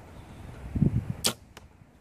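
An arrow shot from a bow at a foam bear target: a soft low thump just under a second in, then a sharp crack about a second and a quarter in, with a faint tick after it.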